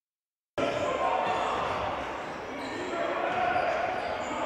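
Silence for about half a second, then the live sound of a basketball game cuts in suddenly: a ball bouncing on the hardwood court among players' and spectators' voices, echoing in a sports hall.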